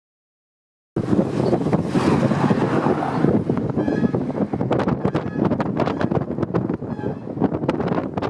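Wind buffeting the microphone over the rumble of a moving vehicle, starting about a second in. Many short clicks and knocks come through from about halfway on.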